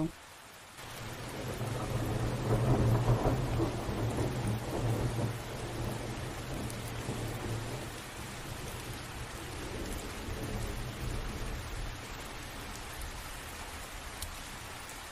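Steady rain with a long roll of thunder that builds about a second in, peaks a couple of seconds later and slowly fades, with a weaker second rumble near the ten-second mark.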